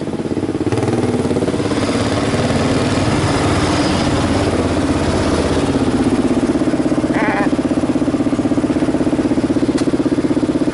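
Motorcycle engine running at low revs while creeping through traffic, with a steady, even pulsing. A brief higher-pitched sound cuts in about seven seconds in.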